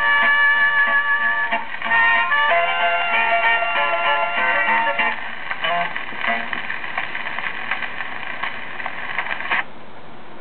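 Closing instrumental bars of a 1942 country-western 78 rpm shellac record played on a turntable: guitar and harmonica play out the ending and settle on a held final chord. The chord cuts off sharply near the end, leaving only the steady surface hiss of the shellac.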